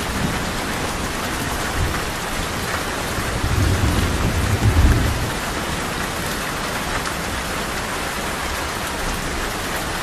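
Steady heavy rain falling on hard ground. A low rumble of thunder swells about three and a half seconds in, is loudest around five seconds, then fades.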